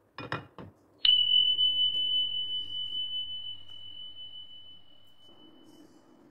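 A few quick clicks, then a single high bell-like ding, one pure tone that rings on and fades away over about five seconds.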